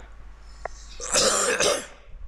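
A man coughing, a short double cough about a second in.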